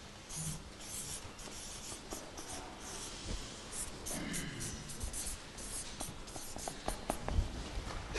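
Handwriting on a board: short scratching pen strokes at irregular intervals as words are written out.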